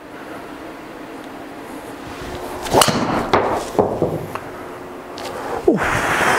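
A driver striking a Titleist Pro V1x Left Dash golf ball: one sharp crack about three seconds in, followed by a few softer knocks.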